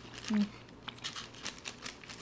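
Thin plastic bag crinkling in a run of short crackles as it is handled and opened, after a brief 'mm' from a person.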